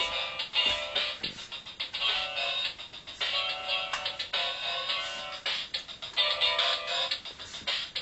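Music with a repeating beat playing through a small speaker, thin and tinny with no bass.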